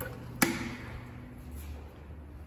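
A single sharp click from the elevator hall panel about half a second in, followed by a short, low ringing tone that fades within a second.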